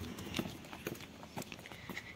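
Footsteps on a lane path, walking at about two steps a second.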